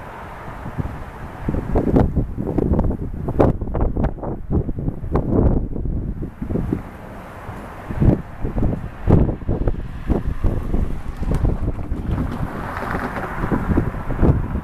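Wind buffeting the microphone in irregular gusts, a low rumbling that rises and falls throughout.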